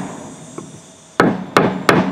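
Rubber mallet striking a muscovite-coated garnet rock on a wooden board to split the mica off. After a pause of about a second, three quick blows come about a third of a second apart.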